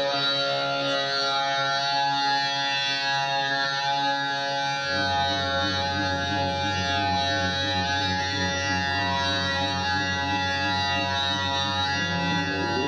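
Live amplified music from a stage PA: sustained, droning tones, with a low pulsing bass line coming in about five seconds in.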